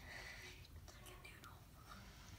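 Near silence with faint whispering.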